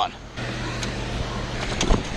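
Steady rushing noise of river water flowing out below a dam spillway. A low hum runs through the middle, and there is a single sharp click near the end.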